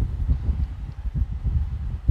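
Irregular low bumps and rumbling of handling noise as a long steel machete is lifted out of its wooden sheath and turned over in the hands.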